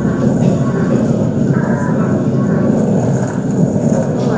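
A steady low rumble with faint voices mixed in, from a video's soundtrack played over room loudspeakers.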